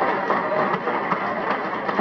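Audience applause: a steady mass of clapping with a few voices calling out.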